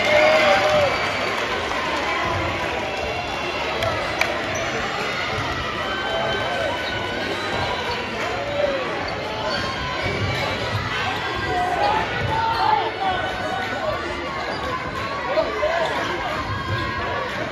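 Basketball game in a gymnasium: a ball bouncing on the hardwood court, with a few sharp knocks, over a steady hubbub of spectators' voices and shouts echoing in the hall.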